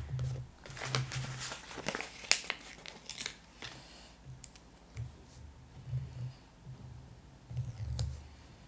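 Paper planner stickers being handled: crackling and crinkling of the sticker sheet and its backing in the first half, then fingers rubbing and pressing a glitter half-box sticker flat onto the planner page, with soft dull bumps of the hands on the page.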